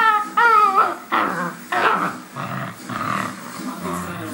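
German Shepherd puppy whining in high, wavering notes, then growling in short rough bursts as it tugs on a slipper in play.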